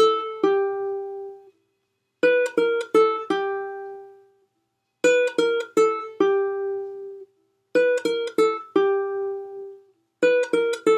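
Ukulele plucked in a quick four-note run, descending on the A string from the second fret to open, then the third fret of the E string left ringing. The phrase repeats about every three seconds: three times in full, plus the tail of one more at the start.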